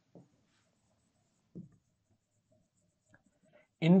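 Marker pen writing on a whiteboard: faint strokes of the felt tip across the board. A man's voice starts speaking near the end.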